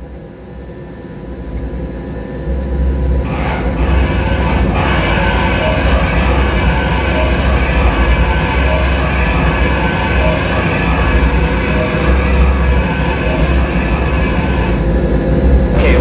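Steady low rumble of a helicopter flight simulator's rotor and turbine sound, swelling up over the first few seconds and then holding, as the simulated helicopter makes a run-on landing.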